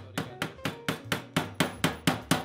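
Ball-peen hammer tapping a new cotter pin into the plastic bushing on the thickness-adjustment shaft of an Imperia RMN220 pasta machine. A quick, even run of sharp metal taps, about four a second.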